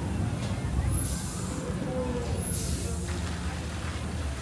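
Steam-vent effect hissing in two bursts, the first about a second in and the second about a second and a half later, over a low outdoor crowd rumble.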